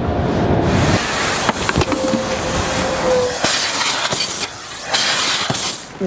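Automatic car wash running over a car, heard from inside the cabin with the window down: a loud, steady rushing hiss with a few knocks, and a faint steady whine about two seconds in.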